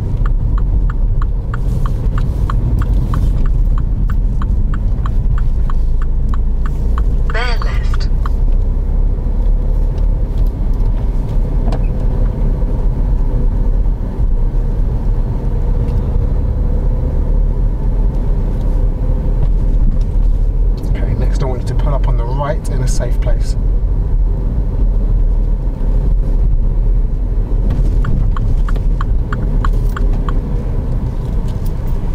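Steady low road and engine rumble inside a Mini hatchback's cabin as it drives along. For the first several seconds, and again near the end, the turn indicator ticks at about three a second.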